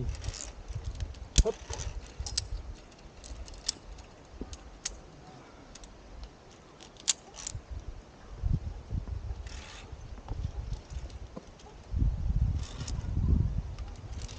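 Metal carabiners of via ferrata lanyards clicking and clinking against the steel safety cable as a climber moves along it: a run of single sharp clicks spread out over several seconds. Low rumbles come and go, loudest near the end.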